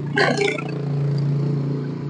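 Yamaha Jupiter Z single-cylinder four-stroke engine, bored up to 140 cc, running at a steady idle on a test stand through an aftermarket racing exhaust, with its newly fitted carburettor not yet tuned.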